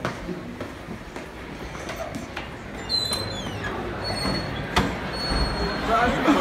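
Footsteps on a polished tile floor with several short, high squeaks from about halfway through, one sliding down in pitch: sneaker soles squeaking on the floor.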